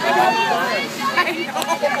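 Several people talking over one another in loud overlapping chatter, with a "yeah" and a laugh near the end.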